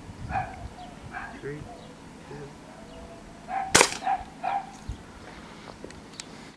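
A single sharp crack of a .177 pellet air rifle being fired, about two-thirds of the way through, with faint low voices before and just after it.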